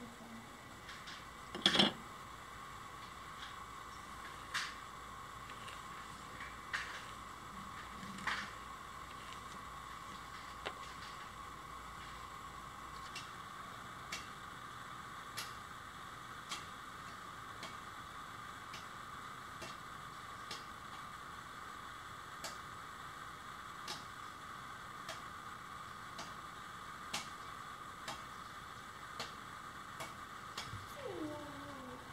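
Light, irregular clicks and taps of thin wooden pieces being set down and shifted against each other while they are fanned into a stepped propeller blade. The strongest knock comes about two seconds in, and a faint steady hum runs underneath.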